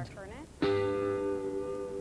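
Background music: a guitar chord struck about half a second in and left ringing.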